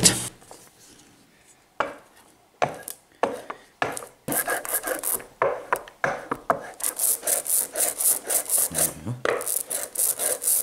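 Rubber brayer rolling printing ink out on a glass slab, a sticky rasping with each stroke: a few separate strokes at first, then fast steady rolling, about four strokes a second, in the second half. The ink has been thickened with black ink so that it now grips the roller.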